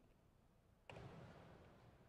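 Near silence: faint room tone, broken about a second in by one sudden faint sound that fades away over about a second.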